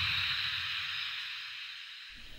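Fading tail of an intro logo sound effect: a low rumble and a hiss that die away steadily.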